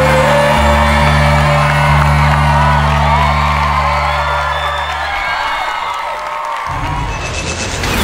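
Live band holding the song's final chord under audience cheering and whooping. The music stops about five seconds in, the cheering carries on, and a transition sound effect starts at the very end.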